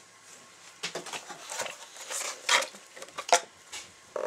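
A cardboard mailer box being opened by hand: irregular rustling and scraping of the flaps, with two sharper knocks in the second half.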